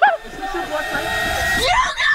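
A horn-like blast of several steady tones held together for about a second and a half, which cuts off suddenly; voices follow.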